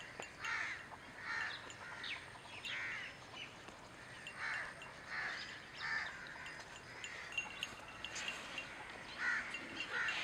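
Crows cawing: a run of harsh caws well under a second apart. The caws pause for a couple of seconds after about six seconds, with faint chirps from smaller birds in the gap, and start again near the end.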